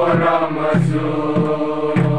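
A large group of men and women singing together in unison, with a steady low beat about every two-thirds of a second.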